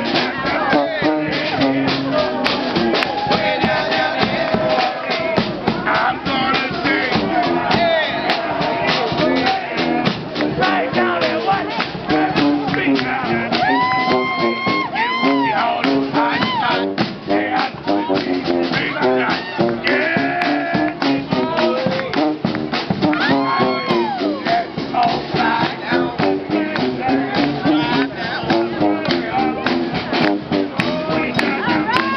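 New Orleans traditional brass band playing in the street: sousaphone bass line, saxophone and trumpet, driven by a steady bass-drum beat.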